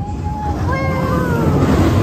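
SheiKra dive coaster train rumbling down its last drop into the splashdown pool, a rushing hiss of water spray building over the last half-second. A high 'woo' yell sounds about a second in.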